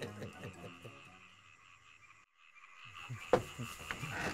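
Night ambience of frogs croaking and insects chirring. It starts after a short gap about two-thirds of the way in, and a single sharp click follows soon after. Before the gap, the tail of laughter and music fades out.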